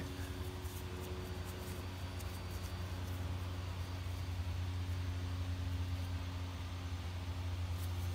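A steady low mechanical hum from a nearby machine, with a few fainter steady tones above it. Faint light ticks of twine being handled come early on.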